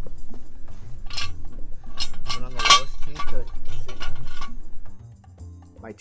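Several sharp metallic clinks and clanks over a music backing; the loudest comes a little under three seconds in, and it all drops away about five seconds in.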